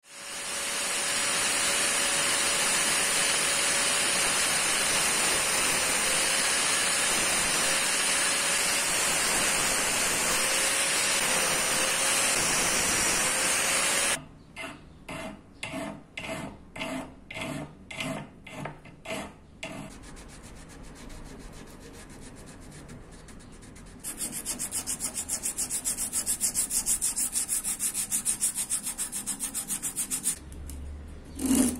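A hand file rasping along the edge of a karambit's wooden handle scales in steady strokes, about two a second, followed by fast back-and-forth hand sanding of the wood with sandpaper. Before the filing, a loud steady rushing noise with a faint wavering hum is the loudest sound.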